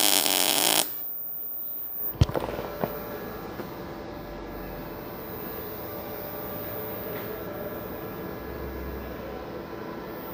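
MIG welding arc with a 75% argon / 25% CO2 mix (Agamix), a steady, even buzz whose smoothness and low spatter mark the argon-rich gas. It cuts off about a second in. A single sharp knock comes about two seconds in, then only a faint low hum.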